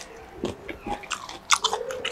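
Close-miked eating: a person biting and chewing with crisp crunching, several short sharp crunches spread through the two seconds.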